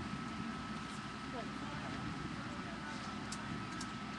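Steady outdoor background noise of a sports ground: a low rumble with a faint steady high whine running through it, and faint distant voices.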